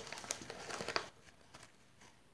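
A striped paper packet crinkling as it is held and tipped, with a few small clicks, for about the first second and then again faintly.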